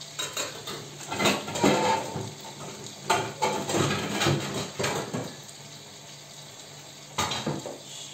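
Pots, lids and kitchen utensils clattering in irregular knocks over the first five seconds, then a sharp clink about seven seconds in as a glass lid meets the steel soup pot. Meat and onions sizzle faintly underneath.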